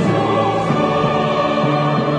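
Church choir singing slow, held chords with instrumental accompaniment, the chord changing twice.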